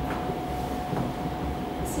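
Handling rumble and faint knocks from a handheld microphone as it is passed between speakers, over a steady low hum with a thin steady tone.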